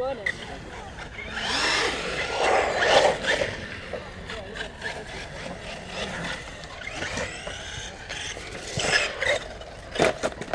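Electric motor of a brushless 6S RC car (Arrma Talion) whining up and down in pitch as it is driven hard, with a rush of tyre noise. It is loudest about one and a half to three and a half seconds in and again near the end, over scattered sharp clicks.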